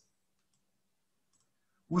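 Near silence with a faint hum and a couple of very faint computer mouse clicks, a little under a second apart.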